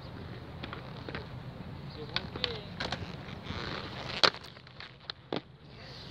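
Inline skate wheels rolling on concrete, with several hard clacks of the skates on a concrete ledge as the skater jumps into a backside savana grind: a short scrape just before the loudest clack a little after four seconds in.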